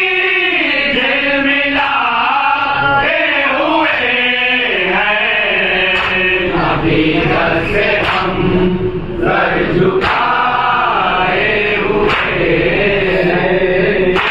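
A group of men reciting an Urdu salam together into a microphone, a slow chanted melody of several male voices carrying on without a break.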